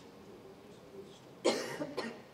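A person coughing: a sharp cough about one and a half seconds in, followed at once by a second, smaller one, against faint room tone.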